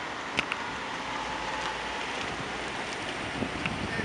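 Steady outdoor background noise with wind on the microphone, and two faint clicks about half a second in.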